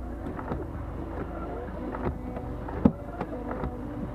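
Off-road 4x4's engine idling, heard from inside the cabin, as a steady low hum with scattered knocks and rattles and one sharp thump about three seconds in.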